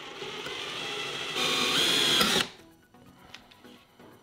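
Cordless drill running a bit into a painted drawer front for about two and a half seconds, getting louder and higher-pitched about a second and a half in, then stopping suddenly.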